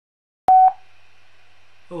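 Dead silence, then about half a second in a single short, loud electronic beep, followed by a faint steady hum.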